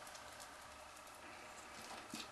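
Near silence: faint room tone with a few faint soft ticks.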